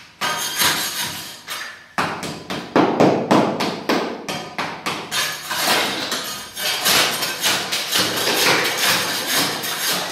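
Long-handled floor scraper striking and prying up old solid-wood parquet blocks: rapid repeated knocks and scrapes of the steel blade on wood and the floor beneath, with loose wooden blocks clattering. Lighter for the first couple of seconds, then a fast, dense run of blows.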